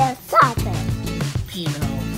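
A small dog gives one short, high bark, a yip about half a second in, over steady background music.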